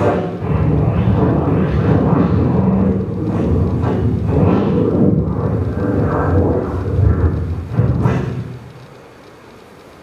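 Loud music with a heavy low end and steady low tones, fading down about eight and a half seconds in to a quiet room.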